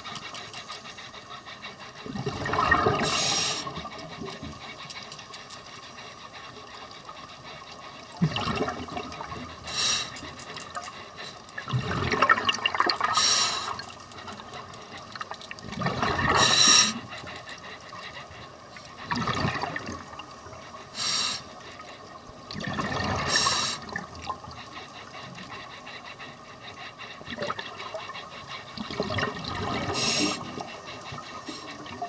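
Scuba diver breathing through a regulator underwater: bubbling, gurgling exhalations come in bursts every few seconds, with quieter hiss between them.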